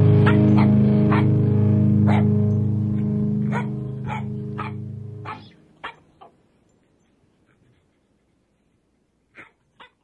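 The last chord of a rock song ringing out and fading over about five seconds, with a dog barking sharply about once a second over it. After the music ends, a few single barks with quiet between them, two close together near the end.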